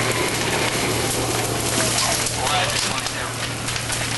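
Burning house crackling and hissing, with scattered sharp crackles over a dense steady noise, and a steady low hum underneath.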